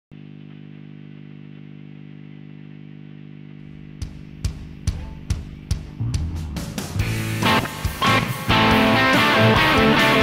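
Electric guitar through an amplifier: a steady hum for the first three and a half seconds, then single picked notes about two or three a second, building into fuller strummed chords and getting louder from about seven seconds on.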